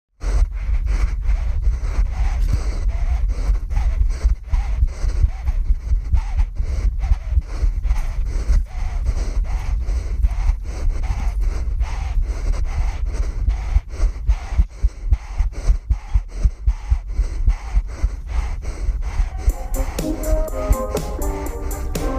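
Strong wind rushing and buffeting over the microphone of a paragliding helmet camera, in rapid pulses. Near the end, music with plucked notes comes in.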